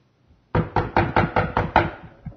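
A rapid run of loud knocks, about five a second, starting half a second in: a preacher pounding on a door, or on the pulpit, to act out people beating on the shut door of Noah's ark.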